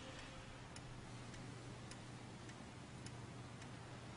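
Faint clock ticking, a little under two ticks a second, over a low steady hum.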